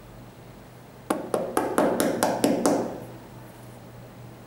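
A quick run of about eight light taps, about five a second, on the rubber outsole of an Air Jordan 13 sneaker as it is held sole-up in the hands.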